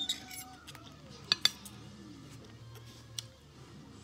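Metal fork clinking against a dinner plate: a few clinks at the start, two loud ones about a second and a half in, and one more near the end.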